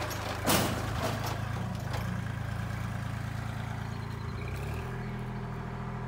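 Kubota L2501's three-cylinder diesel engine, its fuel and timing turned up, running steadily. A brief loud noise comes about half a second in, and the engine note changes a little past four seconds in.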